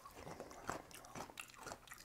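A person chewing a mouthful of raw daikon radish: quiet, irregular crunches.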